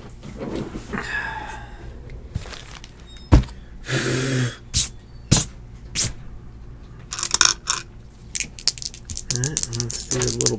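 Sealed cardboard trading-card boxes being handled and set down on a table: irregular knocks and thuds, the loudest a few seconds in, with a run of light clicks later.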